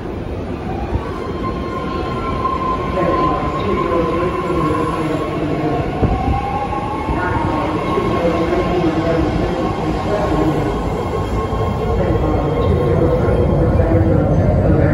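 A BART Fleet of the Future train pulling into an underground station, growing louder as it comes alongside the platform and slows. Its wheels rumble on the rails under a steady high tone and an electric motor whine that glides in pitch as it brakes.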